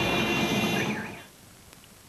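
Vehicle traffic with a steady horn-like tone held over it, fading out a little over a second in.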